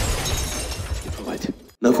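Car crash as a car rolls over: a loud crash with shattering glass, fading away over about a second and a half.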